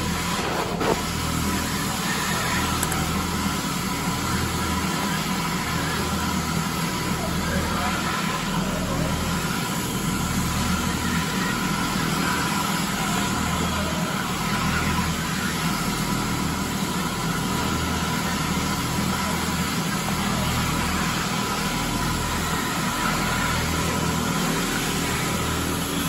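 Advance SC750 walk-behind floor scrubber running steadily while scrubbing: a steady whine over a low hum and a constant noisy rush, with a single click about a second in.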